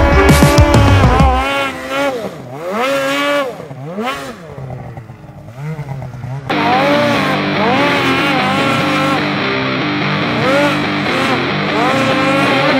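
Snowmobile engine revving up and down over and over, each rev a rising then falling whine, as the sled works through deep powder. Background music plays over it at the start and comes back in abruptly about six and a half seconds in.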